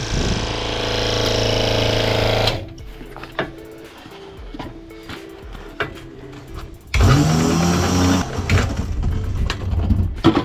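Electric rewind motor of a van-mounted spray hose reel winding in hose: a steady hum that stops after about two and a half seconds, then starts again about seven seconds in, rising in pitch as it spins up, and runs for about a second, with clicks and knocks of the hose and reel in between.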